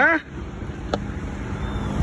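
A small motorcycle engine running as the bike approaches down the street, over a low steady street-traffic rumble. A single sharp click sounds about a second in.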